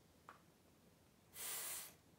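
A woman voicing a hissed consonant sound in a phonics drill: one breathy hiss about half a second long, near the end.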